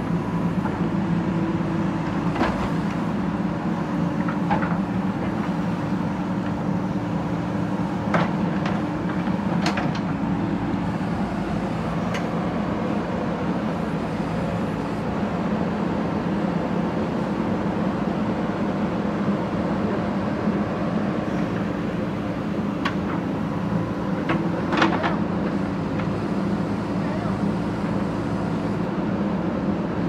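JCB 3DX backhoe loader's diesel engine running steadily under load as the backhoe works, with a few sharp knocks of the bucket against brick rubble.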